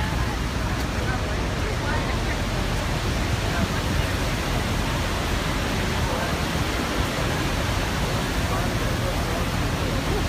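Steady rushing roar of Niagara's American Falls mixed with wind over the open boat deck, with a crowd of passengers talking faintly.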